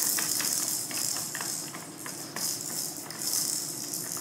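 A plastic toy on a baby activity seat's tray clicking and rattling in small irregular taps as a cat paws at it, over a steady hiss.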